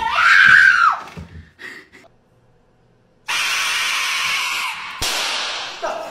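A person screams once, high and loud, for about a second at the start. After a short quiet, a loud steady hiss starts and runs for about two and a half seconds, broken by a sharp knock near the end.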